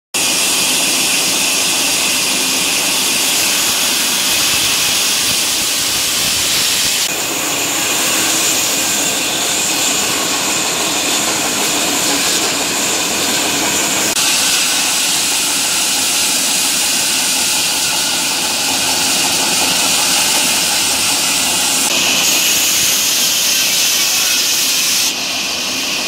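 Large vertical band saw running and cutting through a log: a loud, steady hiss of the blade in the wood, its tone changing abruptly a few times.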